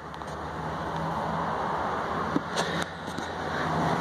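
Steady rushing noise with a low hum underneath, with a few light clicks between two and three seconds in.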